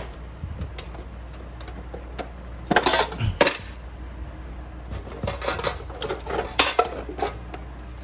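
Metal tins and a stack of abrasive cut-off discs being handled: scattered clinks and knocks, loudest about three seconds in, as the discs are lifted out of a tin.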